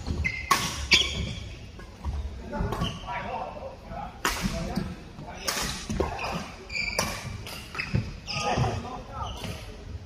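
Badminton rally: rackets striking a shuttlecock in sharp, irregularly spaced hits, with short squeaks of shoes on the court surface between them.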